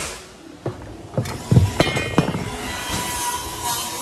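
A few sharp wooden knocks as a length of framing lumber is handled against the rafters and plate, the loudest about a second and a half in, followed by a faint steady tone.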